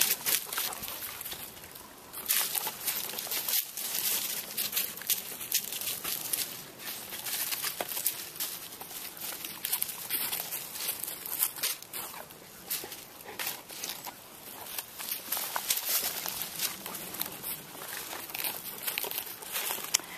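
Dry leaf litter and twigs crackling and rustling as dogs move about and nose through them close to the microphone: a dense, irregular crackle that swells and fades.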